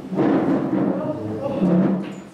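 Several people talking at once, their voices overlapping as chatter, with a few light thumps.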